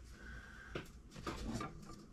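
Faint handling noise in a quiet room: a few soft clicks and rustles about a second in, as objects are moved on the desk.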